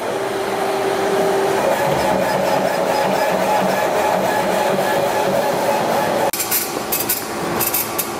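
Epilog Helix laser engraver running an engraving job: a steady mechanical running noise from the moving head and its fans, with a faint steady tone in the first second and a half. About six seconds in the sound changes abruptly to a thinner noise with sharp ticks.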